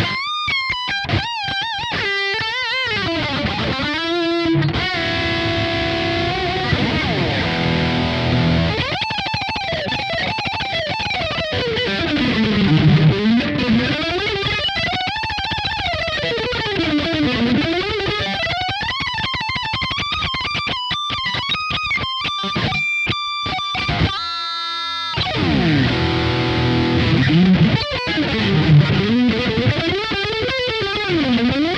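High-gain distorted electric guitar (Schecter NV-3-24 with Bare Knuckle pickups) through a Kemper profile of a Randall Satan amp head, playing lead lines. It has wide bends, vibrato on held notes and a fast run, and stops briefly about three-quarters of the way through.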